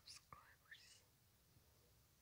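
Near silence, with faint whispered, breathy sounds in the first second.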